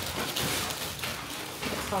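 Thin plastic carryout bag rustling and crinkling as food containers are handled and lifted out of it.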